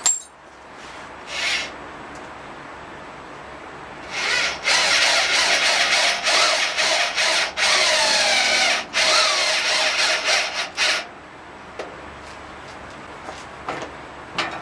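A power drill running in short spurts for about seven seconds, starting about four seconds in, its pitch sagging and recovering as it works, as when driving in a bolt or screw.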